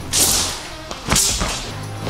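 Two fast swishes of a thin, flexible wushu straight sword whipping through the air, the second a little after a second in and starting with a sharp crack, over background music.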